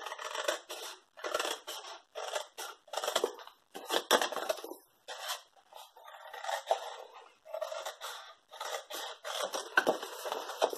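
Scissors snipping through cardstock in a series of short cuts, a little more than one a second, with a brief pause about halfway through.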